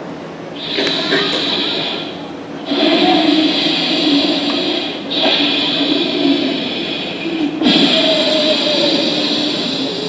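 Slow, deep breaths drawn in and let out with an audible whoosh, as in a guided pranayama exercise. There are about four breaths, each lasting two to three seconds, with short pauses between them.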